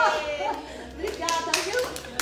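Hand clapping: a short run of quick claps in the second half, mixed with voices.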